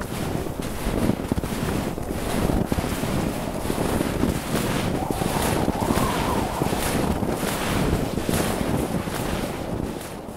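A loud, steady rush of wind.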